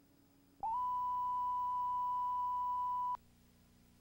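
A steady 1 kHz line-up tone on a commercial tape's slate. It starts just over half a second in and cuts off sharply about two and a half seconds later, over a faint low hum.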